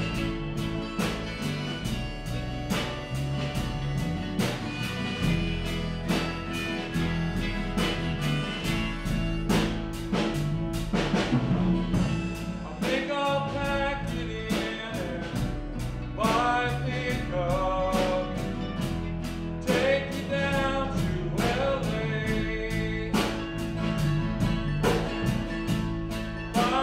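Live country-rock band with mandolin, acoustic guitar, bass and drums playing at a steady beat. A male lead vocal comes in about halfway through.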